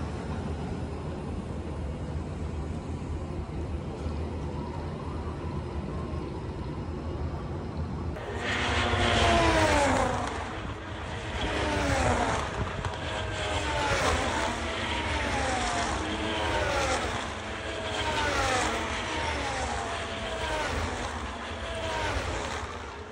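Formula 1 cars' turbocharged V6 engines passing a grandstand one after another, each a high whine that falls in pitch as it goes by, about one car every one to two seconds. For the first eight seconds there is only a steady low background rumble, before the cars begin.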